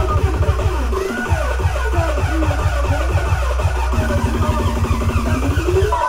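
Electronic dance music from a DJ set played loud over a club sound system: a dense, heavy bass beat under sliding, wavering synth lines, with a rising glide near the end.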